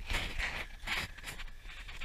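Footsteps crunching over dry pine needles and locust pods, several steps in quick succession.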